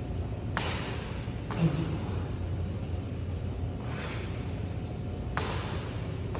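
Burpees on a concrete floor: sharp slaps and thuds of hands and feet landing, about half a second in, again at about one and a half seconds, and near the end. Breaths between, over a steady low hum.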